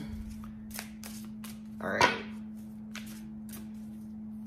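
Tarot cards being handled: scattered light clicks and taps of the cards, over a steady low hum.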